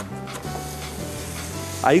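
Cassava, egg and cheese frying in a pan, sizzling steadily as it is stirred with a wooden spoon, under a soft background music bed.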